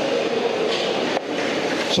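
Steady, loud din of a crowded exhibition hall, noise from a nearby competition area that drowns out the stage for a moment.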